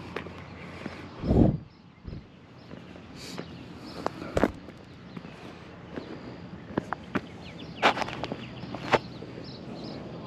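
Footsteps on a gravel boat ramp, a few scattered irregular clicks and crunches, with one louder low thump about a second and a half in.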